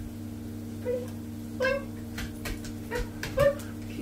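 A dog giving four short, high whines, with light clicks of its claws on a tiled floor between them.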